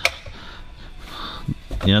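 A man's speech with a pause of about a second and a half: faint background hiss and one small click, then he speaks again near the end.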